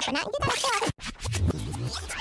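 Cartoon sound effects over background music, with scratchy, sudden noises; the sound cuts out abruptly for a moment about a second in.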